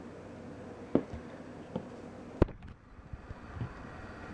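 Three short, sharp clicks as a closed Emerson Roadhouse folding knife is handled and turned over in the hand. The loudest comes about two and a half seconds in, over a faint steady hiss.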